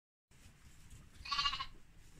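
A lamb bleating once, a short high-pitched bleat about a second and a half in. It comes after a brief moment of dead silence at an edit.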